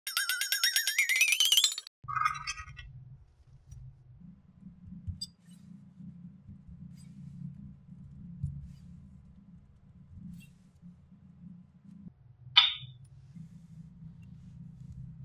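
An opening sound effect: a rising whistle-like tone lasting under two seconds, then a brief chime. After it, a soft low crumbling of hands squeezing and kneading kinetic sand, with one sharp crackle near the end.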